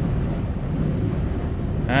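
Wind-driven millstones grinding wheat, a steady low rumble as the heavy stones turn at an even pace. They are running smoothly with no strain, not creaking or complaining.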